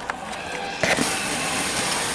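Dry ice bubbling in a bowl of water, a steady hiss that starts suddenly just under a second in.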